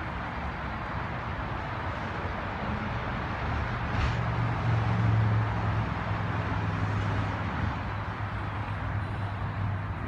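Outdoor road-traffic noise, with a vehicle's low engine rumble swelling about halfway through and then easing off.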